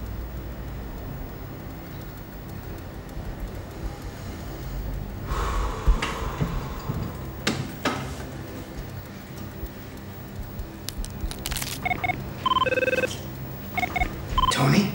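Low, tense underscore music with a swish and two knocks partway through, then a quick series of electronic mobile-phone beeps near the end.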